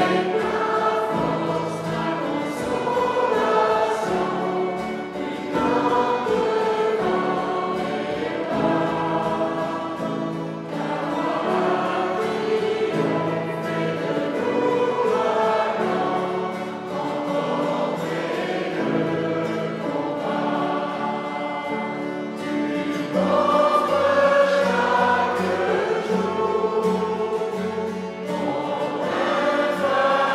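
A church congregation singing a worship song together, in phrases with short breaths between them. The singing grows louder and higher about three-quarters of the way through.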